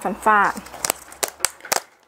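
Thin plastic clamshell produce box of alfalfa sprouts clicking and crackling as it is handled, about five sharp clicks in under a second after a short spoken word.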